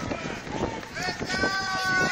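A runner's footsteps on asphalt at a steady pace, about three strides a second, with voices of people calling out over them from about a second in.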